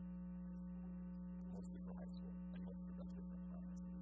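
Steady electrical mains hum from the sound system: one strong low tone with a stack of fainter steady tones above it, unchanging throughout.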